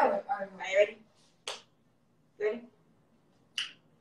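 A woman's singing voice trails off over the first second. Then three short sounds follow about a second apart: a sharp click, a brief vocal sound, and another sharp click.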